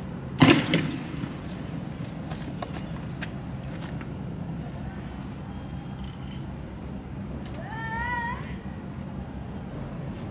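A single loud gunshot about half a second in, from security forces firing rounds at protesters, followed by a few faint distant pops. Near the end, a short high call rises in pitch and wavers.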